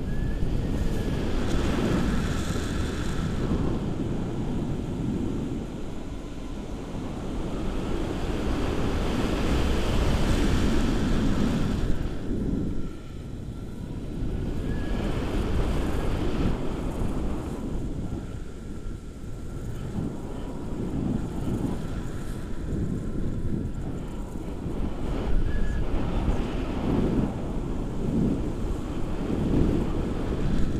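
Wind buffeting the action camera's microphone during a tandem paraglider flight, a loud low rumble that rises and falls in gusts.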